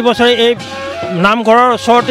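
A man's voice speaking Assamese, with one long, drawn-out vowel that rises and falls in pitch a little past the middle.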